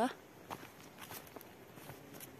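Faint footsteps of a person walking on a rough track, a few soft steps about half a second apart, after the tail of a woman's voice at the very start.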